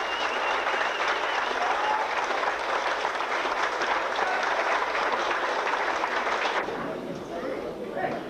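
Audience applauding, with voices mixed in; the clapping dies away about six and a half seconds in.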